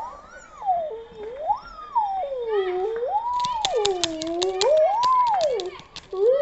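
A child making a pursed-lip 'ooo' sound that swoops up and down like a siren, four rising and falling swoops. A quick run of sharp clicks sounds in the middle.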